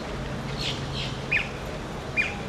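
A bird calling: three short squawks that drop in pitch, the third, about two-thirds of the way in, sharper and louder than the others. A steady low hum runs underneath.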